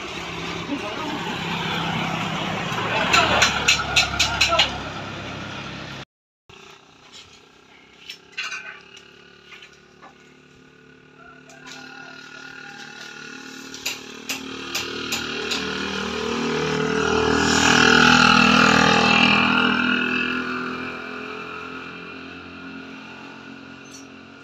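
A motor vehicle passes on the road; its engine swells to the loudest point about eighteen seconds in, then fades away. Before that, a quick run of sharp knocks comes a few seconds in, as workers handle cut sugarcane stalks.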